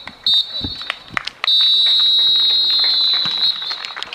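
Referee's whistle blowing for full time: a short blast, then one long blast of about two seconds.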